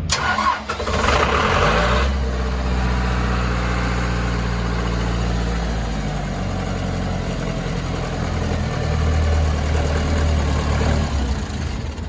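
A John Deere diesel engine on a 40 kW generator set cranks on its starter for about two seconds, catches, then settles into a steady run.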